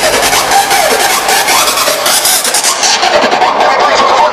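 Loud dance music from a DJ set over a festival tent's PA, recorded close to full scale on a camcorder microphone and heavily overloaded, with crowd noise mixed in. The hiss-like top end drops away about three seconds in.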